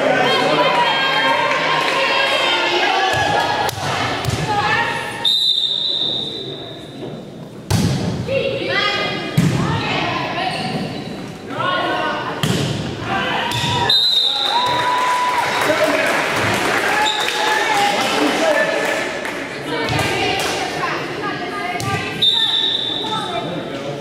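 Volleyball rally in an echoing gym: the ball is hit and thuds sharply again and again while players and spectators call out and talk. A referee's whistle sounds three times: a long blast about five seconds in, then shorter ones around fourteen and twenty-two seconds in.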